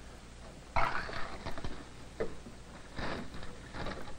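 A metal gas-thermometer bulb being lowered into a glass beaker bath of melting ice: a few sudden splashes and knocks, the first and loudest about a second in.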